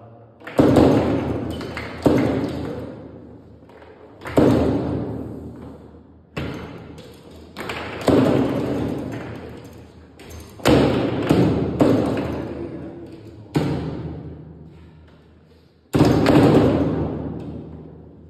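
Foosball table in play: the ball struck by the figures on the rods and banging off the sides of the table, about a dozen sharp knocks at uneven intervals, each fading out over a second or two.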